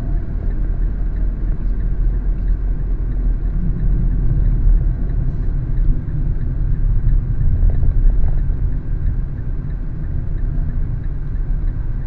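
Steady low rumble of road and engine noise inside a moving car's cabin as it drives along a highway.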